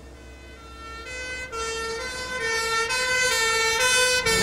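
Ambulance siren sounding two alternating tones, fading in and growing steadily louder.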